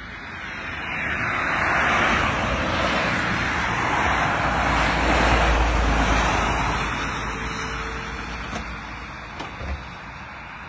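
A car passing by: road and engine noise swells over the first couple of seconds, holds with a deep rumble, then fades away over the last few seconds.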